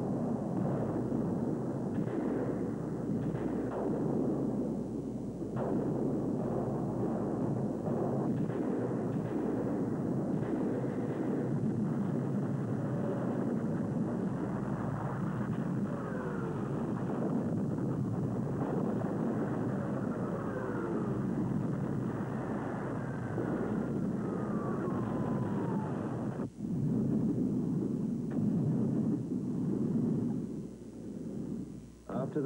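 Artillery bombardment, likely dubbed sound effects over silent archival footage: a continuous, muffled rumble of shell bursts and gunfire. Over it come the falling whistles of incoming shells several times in the second half, the longest about 23 to 25 seconds in, and the noise breaks off briefly near 26 seconds.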